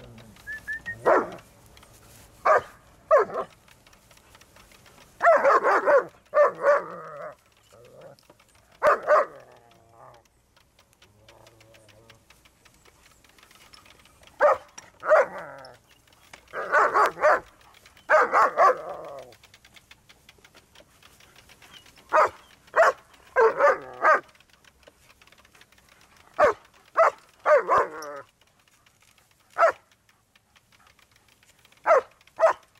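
German shepherds barking in short bursts, several barks at a time, with quiet gaps of a few seconds between the clusters.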